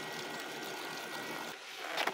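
Steady outdoor background noise with a faint thin high tone and no distinct events, dipping about one and a half seconds in.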